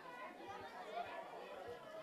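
Indistinct background chatter of many people talking at once.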